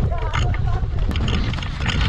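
Laughter and voices over a steady low rumble of wind and handling noise on a camera carried by someone running on sand.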